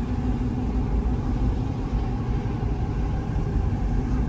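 Steady engine and tyre noise of a moving car heard from inside its cabin: an even low rumble with a faint steady hum.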